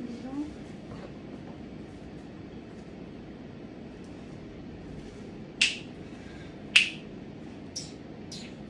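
Two sharp finger snaps a little over a second apart in the second half, over a steady low room hum.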